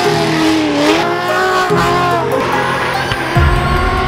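Drift cars sliding with engines revving and tyres squealing, mixed over background music; the engine pitch dips and rises, and a deep falling sweep comes near the end.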